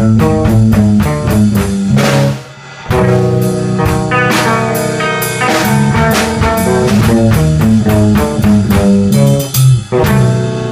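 Three-piece rock band playing live: electric guitar through an Orange amplifier, electric bass and drum kit, coming in together on the beat. The band drops out for a short break about two and a half seconds in, then comes back in.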